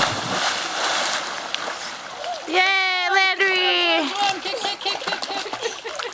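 A big splash as an adult holding a toddler jumps feet-first into a swimming pool, the water churning for about two seconds. Then a high-pitched voice calls out twice in long cries, with lighter splashing after.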